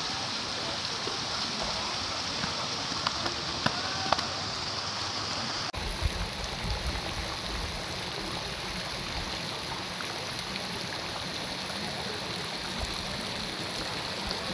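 Steady rush of running water. About six seconds in, the sound changes abruptly and a low rumble is added.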